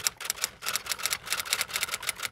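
Typing sound effect: a quick, uneven run of keystroke clicks, about six or seven a second.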